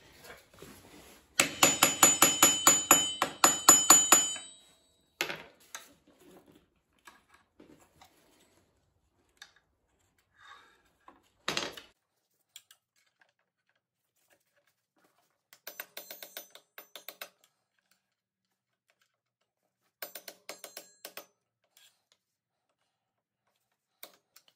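A punch being tapped against the lock washer on a KTM 450 EXC-F clutch hub nut, bending its locking tabs into place: a fast run of ringing metal-on-metal taps lasting about three seconds, starting about a second in. It is followed by a few single taps and two shorter, quieter runs of light taps later on.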